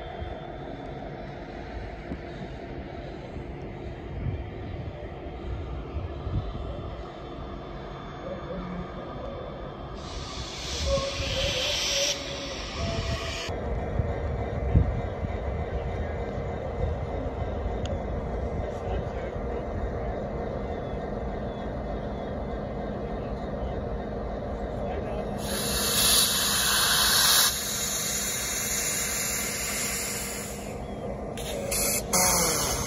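A diesel-hauled train of boxcars rolling past with a steady low rumble and a locomotive engine hum. Two loud bursts of hiss, a few seconds each, come about ten seconds in and near the end.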